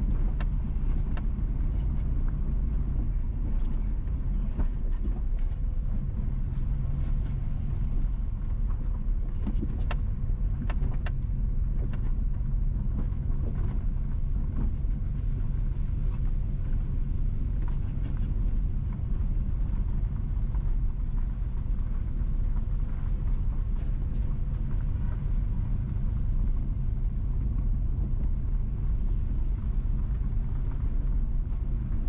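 Car driving slowly over a rough, patched road: a steady low rumble of engine and tyres, with scattered sharp clicks and knocks, several close together about ten seconds in.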